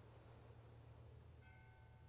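Near silence: room tone with a low steady hum, and a faint bell-like chord of held tones coming in about one and a half seconds in.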